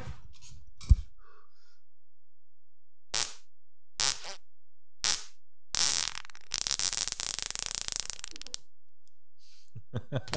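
A person farting into a handheld microphone: three short puffs about three, four and five seconds in, then one long sputtering fart of about three seconds. A single knock is heard about a second in.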